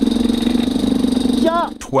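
Yamaha YZ250X single-cylinder two-stroke engine lugging steadily at very low revs, around 1,200–1,400 rpm, with an even fast pulse of firing strokes as the bike creeps along. A voice starts near the end.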